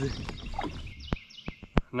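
Birds chirping faintly in the background, with three sharp clicks in the second half.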